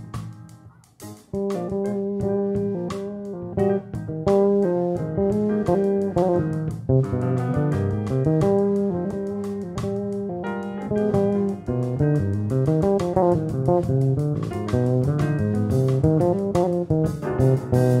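Electric bass guitar playing a solo line of plucked notes, mostly in its low and middle register, with a brief pause about a second in.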